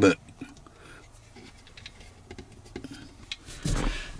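Soft scattered plastic clicks and taps of a phone being handled and jiggled in a windshield-mounted car phone holder. A short, louder rustle comes near the end.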